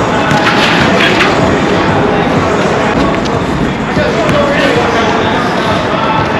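Outdoor pickup basketball game: a few sharp knocks of the ball and shoes on the court and scattered voices, over a loud, steady rushing noise.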